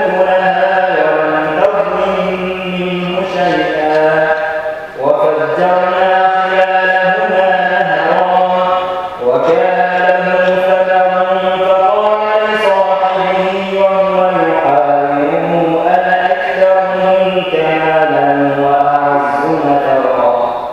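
A man reciting the Quran in a melodic, chanted style, holding long phrases that rise and fall, with brief pauses for breath about five and nine seconds in.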